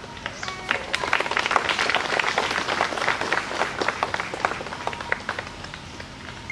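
Crowd applauding: dense clapping that swells about a second in and thins out near the end.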